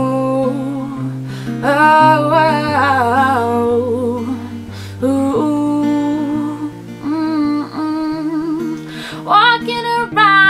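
Acoustic guitar accompaniment with steady held chords and a moving bass line, over which a woman sings short wordless 'ooh, oh' vocal phrases, two longer ones about two seconds in and near the end.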